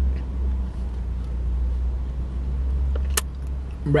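Steady low rumble of a car heard from inside the cabin, with one sharp click about three seconds in.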